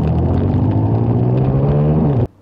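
Motorcycle engine pulling under acceleration, its note rising steadily in pitch.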